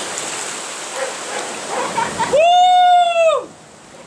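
Stream water rushing, then about two and a half seconds in a loud, high, held cry about a second long that rises at the start, holds one pitch and falls away at the end.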